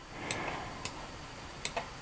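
Three short, sharp computer mouse clicks, spaced about half a second to a second apart, over a faint steady hiss.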